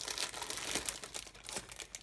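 Clear plastic bags around plastic model-kit sprues crinkling as hands lift and leaf through them in the box, a run of irregular crackles.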